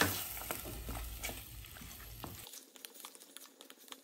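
Mutton and onions sizzling in hot oil in a steel pressure cooker, stirred with a wooden spatula that knocks against the pot. The sizzle is loudest at the start and fades, leaving only faint scattered clicks from about halfway.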